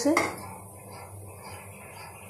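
Faint handling sounds of a fried pakora being lifted off a stainless-steel plate and broken open by hand, following the last of a spoken word.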